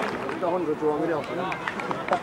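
Spectators' voices talking and calling out, too indistinct to make out words.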